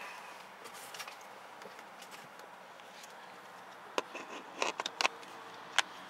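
Faint steady background hiss, broken about four seconds in by a short run of sharp clicks and knocks, with the last, loudest one near the end.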